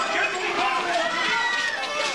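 Commotion of many people's voices overlapping, shouting and calling out at once, with no single voice standing clear.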